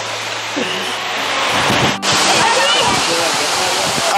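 Henrhyd Falls, a tall waterfall, pouring steadily into its plunge pool: an even hiss of falling water that jumps louder and brighter at a sudden break about halfway through. Faint voices sound under it.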